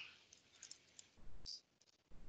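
Near silence broken by a few faint clicks, with a slightly louder one about a second and a half in.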